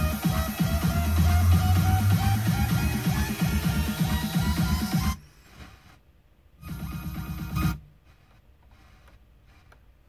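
Electronic music with a steady beat playing from an FM car radio. About five seconds in it cuts off suddenly as the radio is tuned off the station, leaving near quiet broken by a brief snatch of another station's sound about seven seconds in.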